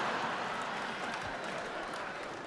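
Audience applauding, with crowd noise, the sound slowly dying away.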